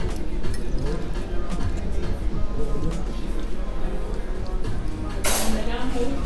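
Background music and a murmur of voices in a restaurant, with a metal fork clinking now and then against a china plate. A short, loud hiss comes about five seconds in.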